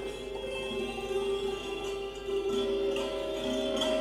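Santoor played in Indian classical style, its struck strings ringing in sustained, overlapping tones.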